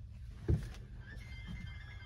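A single dull, low thump about half a second in, over a steady low rumble.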